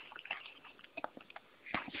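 Quiet room with a few faint, scattered clicks and a soft breath near the end.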